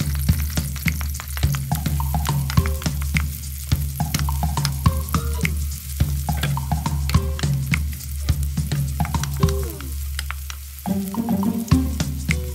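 Chopped red onion sizzling in hot oil in a nonstick wok, with a wooden spoon scraping and tapping against the pan again and again as it is stirred.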